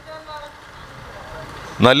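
A pause in a man's speech into a handheld microphone, with only faint outdoor background noise and a low hum; he starts talking again near the end.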